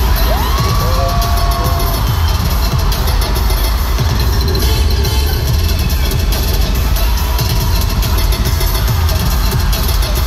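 A K-pop song played loud over an arena sound system, with heavy bass, as a crowd cheers.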